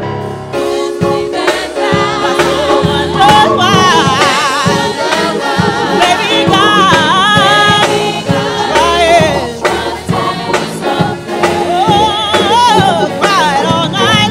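Gospel choir singing with a lead voice running and wavering above held choir chords, backed by a drum kit and keyboard, with drum hits keeping time.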